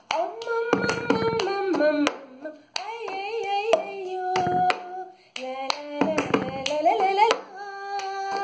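Cup-song rhythm: hand claps and a plastic cup tapped and knocked on a tabletop, under a woman singing the melody.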